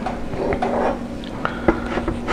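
Kitchen sounds: a few light clicks and taps over a steady hum.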